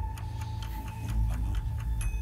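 Quiz-show countdown timer sound effect: rapid, even clock ticking over a steady low hum.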